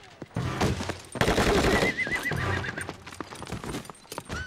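Drama soundtrack: a horse whinnies, one wavering call about two seconds in, over the noise of a scuffle with repeated sharp blows.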